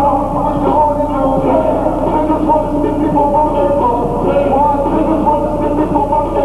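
Loud, continuous hip-hop music from the stage sound system at a live concert, recorded on a camcorder's microphone, with sustained melodic lines over a steady backing.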